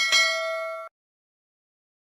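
Notification-bell sound effect: a single bright ding with several ringing tones, cut off suddenly just under a second in.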